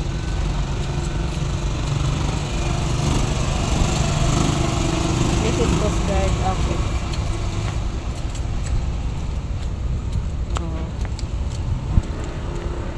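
Steady low rumble of outdoor road traffic, with a woman talking over it.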